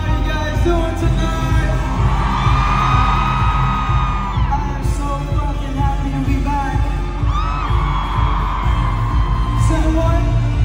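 Live concert music through a loud PA: a heavy, steady bass beat, and a singer holding long notes into a microphone.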